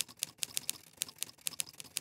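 A quick, irregular run of soft, high clicks, about seven a second.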